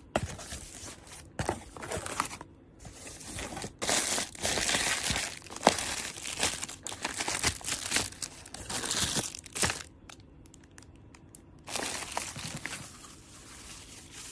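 Plastic-wrapped packs crinkling and rustling as they are handled and shifted inside a cardboard box, in uneven bouts with sharp crackles, loudest through the middle, with a quieter stretch about ten seconds in before a last bout.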